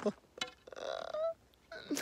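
A man's short wordless vocal sound, a little over half a second long, sliding up in pitch at its end.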